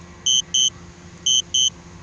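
DJI Spark remote controller sounding its low-battery return-to-home warning: a high double beep about once a second, heard twice.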